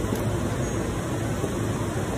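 Steady rushing background noise with a low hum underneath, with no change in level.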